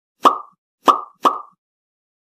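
Three short cartoon 'pop' sound effects, the second and third close together, as animated graphics pop onto the screen.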